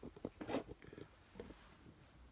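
Quiet room with a few faint clicks and rustles of handling in the first moment, then little else.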